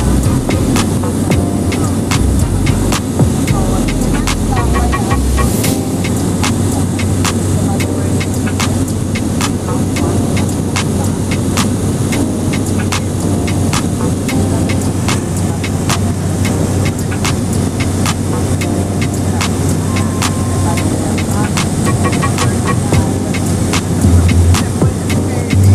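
Small high-wing passenger plane's engine and propeller running steadily in cruise, heard from inside the cabin as a loud, even drone with a low hum and scattered light clicks.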